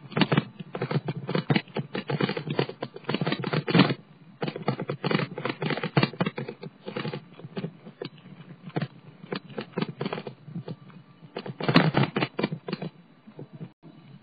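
Rapid, irregular clattering and rattling from a bicycle and the camera riding on it as they bump over the pavement. It is dense at first, thins out in the middle, rattles hard again near the end, then dies down.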